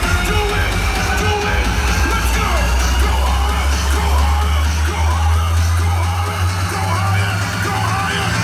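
Loud electronic dance music played over a festival sound system, heard from within the crowd, with a heavy, held bass line. Crowd members yell over the music.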